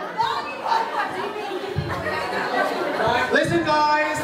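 Several people talking over one another in a large hall: crowd chatter.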